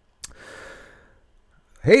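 A man's soft audible breath into a close microphone, lasting under a second, with a small mouth click just before it; his speech starts near the end.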